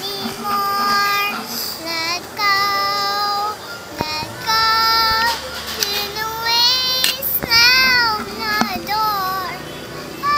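A young girl singing, holding long high notes in short phrases with brief breaks between them, some notes bending in pitch.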